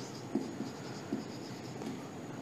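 Marker pen writing on a white board: short strokes with soft taps, the strongest about a third of a second in and again just after a second.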